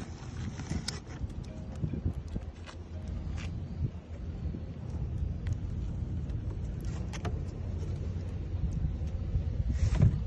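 Steady low rumble throughout, with a few light knocks and rustles as a plastic cooler's inner liner is lifted out and the cooler is handled.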